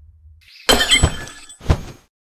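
Sound effect of a metal chain snapping apart: three sharp crashes within about a second, the first with a bright metallic ringing, then it cuts off suddenly.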